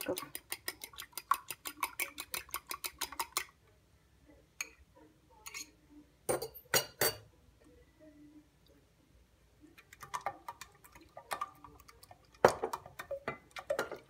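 A metal fork beating egg against a glass bowl, a quick run of clicks at about seven a second that stops about three and a half seconds in. After a few separate knocks, a whisk stirs in an enamel pot, clicking and tapping unevenly against the pot's side, with one sharper knock near the end.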